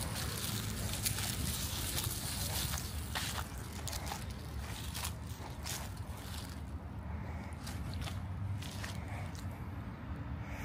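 Outdoor background: a steady low rumble, with faint scattered rustles and light footsteps on grass and dry leaves, more of them in the first half.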